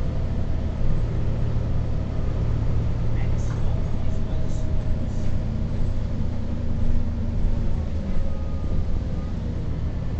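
Bus engine running steadily as the bus drives along, heard from inside the passenger cabin.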